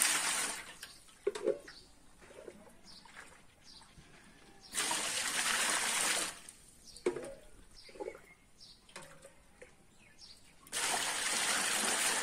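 Water poured out of a mug three times, about six seconds apart, each pour lasting about a second and a half. The water is being scooped from the cooling vessel on top of a homemade pot still, where it has grown hot and has to be changed for cold.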